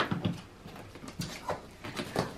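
Cardboard box flaps and polystyrene foam packaging being handled as a box is opened: a few short scrapes and knocks with quieter gaps between.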